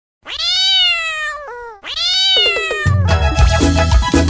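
A cat meowing twice, two long meows each falling in pitch at the end, followed by band music with bass and percussion starting near the end.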